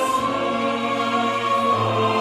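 Mixed choir singing sustained chords with a Baroque orchestra, in a French Baroque grand motet.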